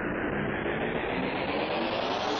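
Electronic music build-up: a synthesized rushing noise sweep that grows steadily brighter and rises in pitch, the riser leading into a drop.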